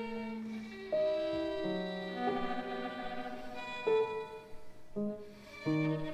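Piano trio of violin, cello and piano playing sparse, very quiet contemporary chamber music, marked tentative and delicate: separate held notes and short figures enter about once a second, overlapping loosely rather than together.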